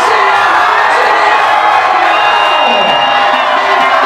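Nightclub crowd cheering and whooping over an electronic dance track played through the club's sound system during a vocal-free build, with a synth pitch sliding down about two-thirds of the way through.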